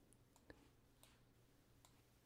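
Near silence with a faint, short computer mouse click about half a second in.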